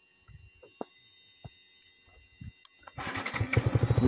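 A few faint clicks in near silence, then about three seconds in a Yamaha MT-15 single-cylinder motorcycle engine comes in and runs with an even, rapid beat, growing louder.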